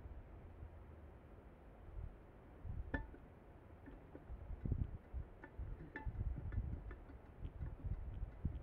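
Light clinks and taps of glassware being handled, two of them with a short ring about three and six seconds in, over low handling rumble.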